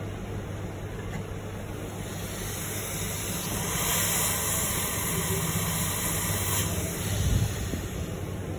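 Hot air rework station blowing a steady hiss of air, growing louder for a few seconds in the middle while the nozzle heats a capacitor on the phone's logic board to melt its solder. A low steady hum runs underneath.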